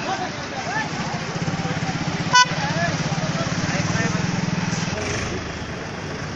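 Traffic sounds: a motor vehicle engine running with a low, even pulse that swells and then fades. Voices talk in the background, and a short horn beep sounds about two and a half seconds in.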